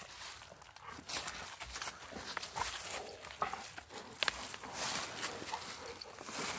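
Footsteps and dogs' paws crunching and rustling through dry fallen leaves, an irregular crackle with many short sharp rustles.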